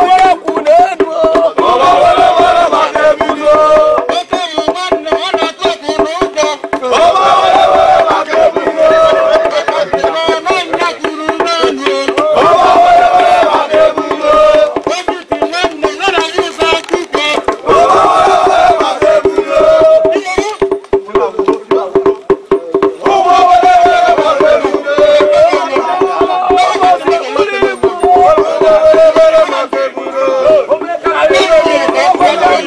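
Traditional Igbo funeral music: a group of voices chanting over drums and percussion, with a steady held note underneath and crowd noise.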